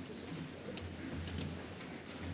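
Faint, irregular ticks and shuffles of people moving about on a stage, such as footsteps and chairs, over a steady low hall hum.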